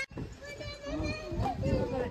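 Faint background voices: several people talking at once outdoors, with a child's voice among them.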